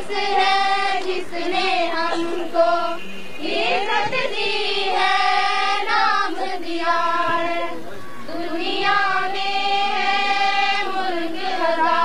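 A choir of schoolgirls singing a welcome song together, with their voices carrying on steadily through a melody with short breaks between phrases.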